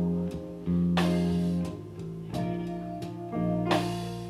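Live blues band playing a slow instrumental passage between sung lines, guitar to the fore over sustained bass notes. Two strong accented hits land about a second in and near the end.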